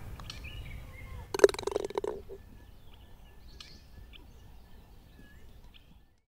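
A putter strikes a golf ball: one sharp click about a second and a half in, followed by a short clatter. Birds chirp faintly over light outdoor background noise.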